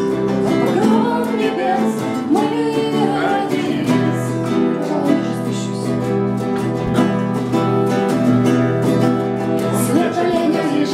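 Two acoustic guitars, one of them a nylon-string classical guitar, strummed together with a woman singing along. The singing is clearest in the first four seconds; after that the guitars carry more of the sound.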